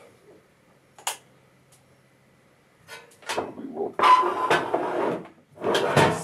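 A single sharp click about a second in, then, after a quiet stretch, a couple of seconds of loud scraping and rustling handling noise on a workbench.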